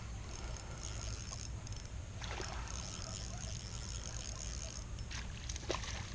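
Spinning reel being cranked as a small spinner is retrieved, over a low rumble of wind on the microphone. Near the end come a few light splashes as a bluegill strikes the lure at the surface.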